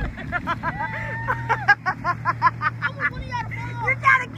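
Voices laughing and shouting in quick repeated bursts over the steady low drone of a motorboat engine.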